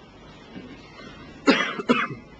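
A man coughing twice into close microphones, the first cough about one and a half seconds in and a shorter one just after.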